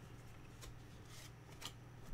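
Faint rustle of baseball trading cards being slid off a hand-held stack, with two soft flicks about a second apart.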